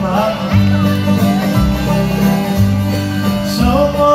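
A bluegrass band playing live: fiddle, mandolin, guitar and upright bass, with the bass notes changing about once a second under a wavering lead melody.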